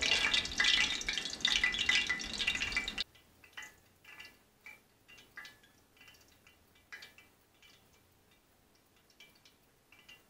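Hot frying oil in a cast iron skillet sizzling and crackling, cutting off suddenly about three seconds in. After that only faint, scattered small ticks.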